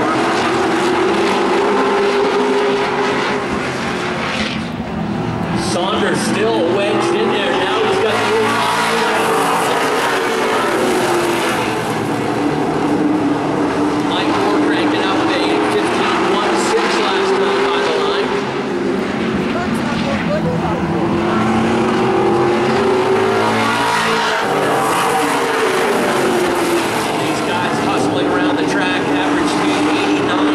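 A pack of Pro Stock race cars running around a short oval track, several V8 engines together, their note rising and falling again and again as the field circles.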